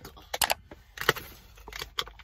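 Small Pringles tubs being opened: the plastic lids and foil seals peeled back by hand, giving a run of short, irregular crackles and clicks.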